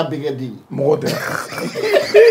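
A man talking, then people chuckling and laughing from about a second in.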